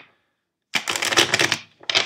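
Tarot cards being shuffled by hand: a quick flurry of flicking cards about a second long, starting partway in, then a second shorter flurry near the end.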